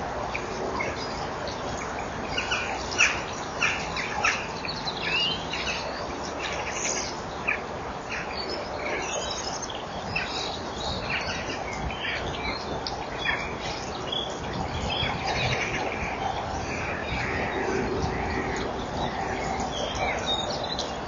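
Small birds chirping: many short, high calls in quick succession, some a little longer toward the end, over a steady hiss.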